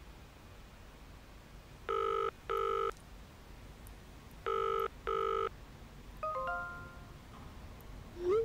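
Telephone ringing tone in the British double-ring pattern: two pairs of short buzzes about two and a half seconds apart. A brief run of stepped electronic beeps follows about six seconds in.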